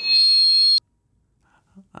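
Microphone feedback squeal through a stage PA system after a dropped microphone: a loud, high-pitched ringing of several steady pitches that cuts off suddenly just under a second in.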